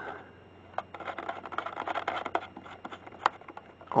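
An antenna being screwed by hand onto an RC transmitter's gold threaded antenna connector: faint scratchy rubbing and light clicks of the threads and fingers, with a couple of sharper clicks.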